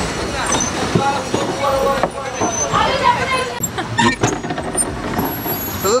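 Voices talking over steady background noise, with a few sharp knocks about four seconds in from people climbing into a plastic pedal boat.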